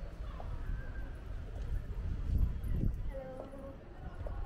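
Street ambience under a stone archway: footsteps on stone paving and people talking in the background, over a low rumble that swells a little past halfway.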